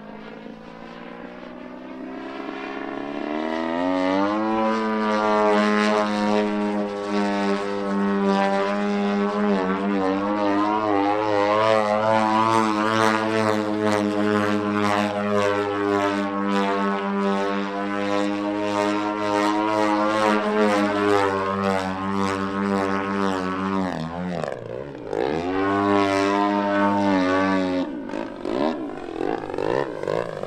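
Engine and propeller of an aerobatic radio-controlled model plane in flight. It is steady at first, then rises in pitch and loudness as the throttle opens a few seconds in, and holds a high, slightly wavering note through the manoeuvres. Near the end the pitch dips briefly and climbs back.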